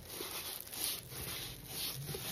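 Soft, uneven rubbing and rustling of a rolled diamond painting canvas as it is handled.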